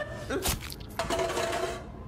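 A sharp knock about half a second in, then a ringing metallic tone that lasts most of a second.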